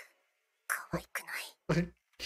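Speech in a few short bursts, starting after about half a second of quiet.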